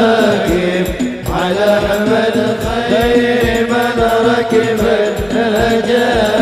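Men's voices singing sholawat, a devotional Islamic song, over a steady hadroh frame-drum beat of about two strokes a second.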